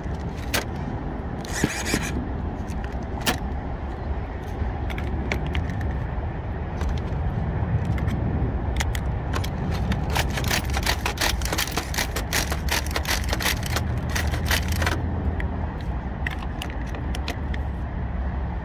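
Rattling clicks and scrapes over a steady low rumble, densest in the middle stretch: handling noise from the camera being carried.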